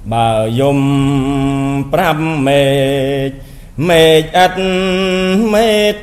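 Khmer smot, Buddhist chanted verse, sung by a solo male voice in long held notes with slow wavering ornaments. Phrases break off briefly about two seconds in and again about three and a half seconds in.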